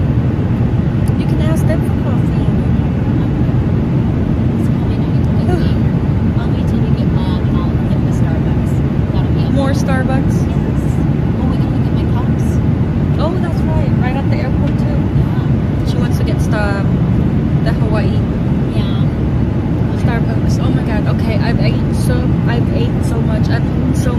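Steady cabin noise of an airliner in flight: a constant low roar of the engines and rushing air, unchanging throughout.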